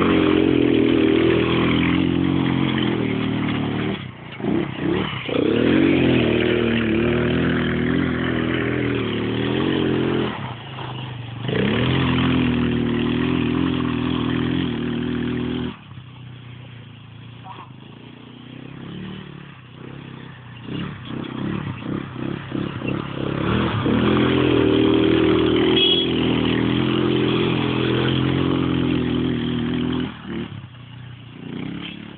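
A 150cc quad bike engine revving hard and changing pitch as the throttle is worked through mud. The engine falls back quieter for several seconds past the middle, then revs loudly again near the end.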